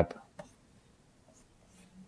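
Stylus stroking and tapping lightly on a graphics tablet while short pencil lines are drawn: a few faint, brief ticks and scratches.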